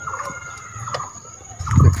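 Chickens clucking in short repeated calls, over a steady high-pitched insect trill. A man's voice starts loudly near the end.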